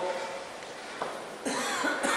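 A short cough close to a handheld microphone, about one and a half seconds in, after a man's speech trails off.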